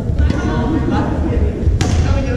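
Badminton doubles rally: a racket strikes the shuttlecock with one sharp crack near the end, over low thuds of players' footsteps on the wooden court and voices in the gym hall.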